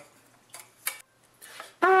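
A couple of faint clicks and a soft breath as a trumpet is brought up, then just before the end the trumpet starts the first, steady note of an A-flat diminished (whole-step/half-step) scale.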